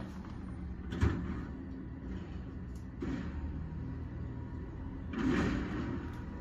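Side-loader garbage truck's diesel engine running with a steady low rumble, muffled through the window glass, with a single knock about a second in and a brief rush of noise near the end.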